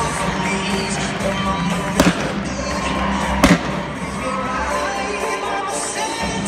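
Two revolver shots fired from horseback, about two seconds in and again a second and a half later, over arena music and crowd noise.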